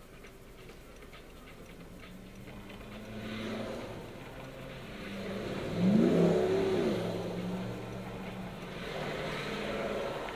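Cars in cross traffic driving past close by, heard from inside a waiting car. The loudest passes about six seconds in, its engine note rising and then falling; another swells up near the end.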